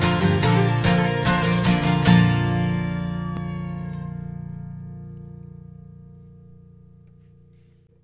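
Acoustic guitars strummed in a steady rhythm, ending about two seconds in on a final chord that rings and slowly fades away over some six seconds.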